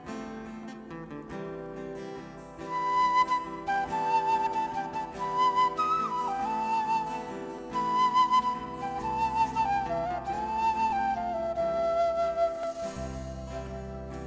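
Instrumental music: acoustic guitar chords, then from about three seconds in a side-blown flute plays a slow melody with bending notes over the guitar, and low notes join near the end.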